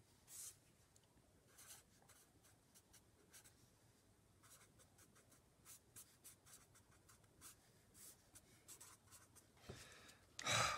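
Felt-tip marker writing on paper: faint, quick scratchy strokes as an equation is written out.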